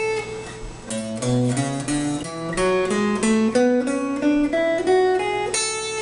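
Semi-hollow electric guitar played one note at a time: a held high A rings first, then about a second in the A major scale climbs two octaves from the low E string's 5th fret to the high E string's 5th fret, about three picked notes a second.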